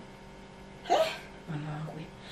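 A woman's voice in a pause between sentences: a short catch of breath about a second in, like a sob, then a low hummed "mm" near the end.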